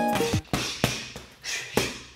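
Gloved punches striking a heavy bag: a run of about five sharp hits, a third of a second or so apart, over background music.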